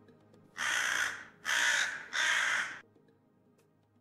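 A corvid caws three times in quick succession, each call loud, rasping and about half a second long, over faint background music.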